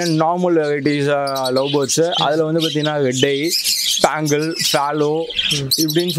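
Budgerigars chirping, in many short high calls, with a man's voice talking over them almost throughout and louder than the birds.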